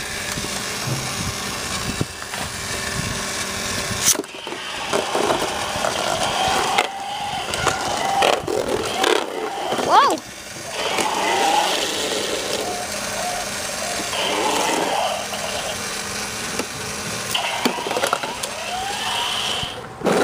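Small battery-driven motor of an infrared remote-controlled Beyblade top (IR Control Galaxy Pegasus) running as it spins in a plastic stadium, a steady whir, with voices over it.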